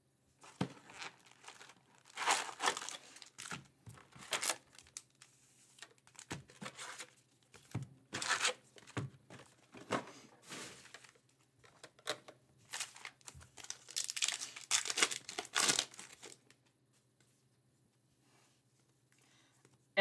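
2024 Topps Heritage Baseball card pack wrappers being torn open and crinkled in a run of irregular rustling bursts, which stop a few seconds before the end.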